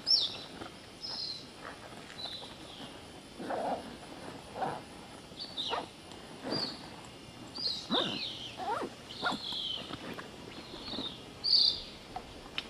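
Pohnpei flying fox calling: short calls that fall in pitch, some high and some lower, at irregular intervals, loudest just after the start and near the end.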